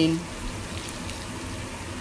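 Boiling water poured from a stainless steel kettle onto shredded Chinese cabbage in a bowl: a steady pouring and splashing noise.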